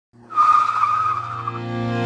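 Car tyre screech sound effect: a high wavering squeal that starts just after the opening and fades out about a second and a half in, over a low steady hum and the start of background music.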